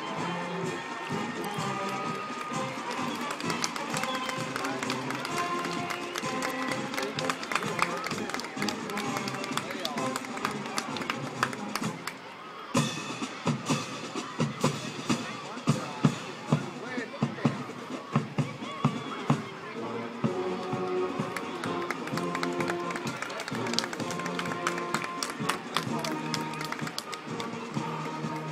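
Marching band playing a march outdoors: brass and woodwinds over drums. About twelve seconds in, the winds drop back and loud drum strokes carry the music for several seconds, then the full band comes back in.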